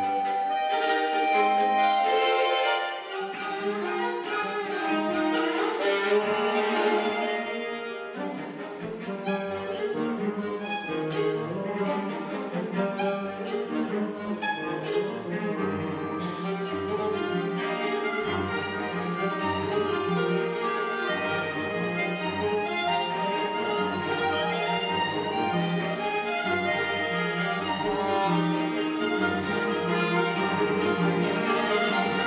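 A small live chamber ensemble playing: violins and other bowed strings carry the melody over guitar and accordion. The music plays without a break.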